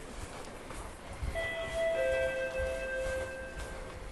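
A station public-address chime: two descending bell-like notes, the lower one sounding about half a second after the first, the two overlapping and ringing on for nearly two seconds. It signals the recorded announcement that follows. Low station hubbub runs underneath.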